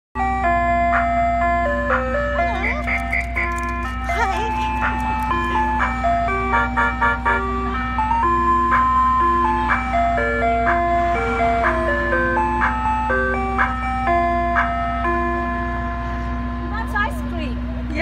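Ice cream truck's chime jingle playing a simple repeating tune through its loudspeaker, over a steady low hum.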